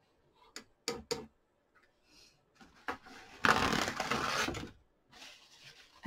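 A few light taps and clicks, then about a second of loud crackling rustle as a paper towel is pulled and handled to blot a wet watercolour brush dry.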